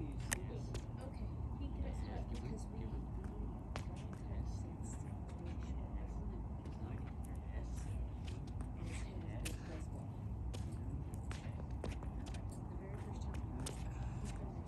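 Soccer ball taps and sneaker scuffs on a concrete driveway: many short, irregular knocks and scrapes over a steady low rumble.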